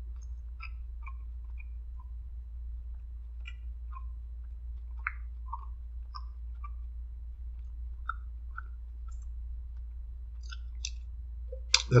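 A person chewing a small piece of blackened chicken, with faint scattered mouth clicks, over a steady low hum. A louder click comes near the end.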